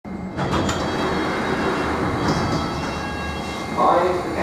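Interior of a London Underground S7 stock carriage at a station stop: the train's equipment gives a steady low hum, with a few clicks about half a second in. The passenger doors slide open near the end.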